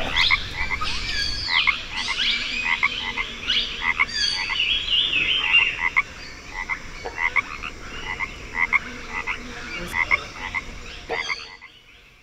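A chorus of frogs croaking, many short calls repeating a few times a second, with some higher sweeping calls among them; it fades out near the end.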